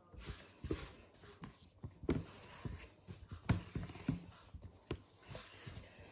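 Soft bread dough being kneaded by hand on a floured wooden chopping board: irregular soft thumps and slaps as the dough is pushed and folded against the board.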